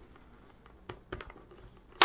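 Faint handling noise with a few soft clicks about a second in: hands working the chin strap and lower padding of a full-face motorcycle helmet.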